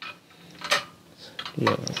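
A few light metal clicks and clinks as a steel bolt is handled and fitted into the bolt hole of a steel table base, some with a short high ring.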